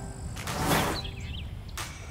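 Outdoor ambience: a low rumbling rush, like wind on the microphone, swelling and fading about half a second in. A bird chirps a few times around the one-second mark, and there is a short click near the end.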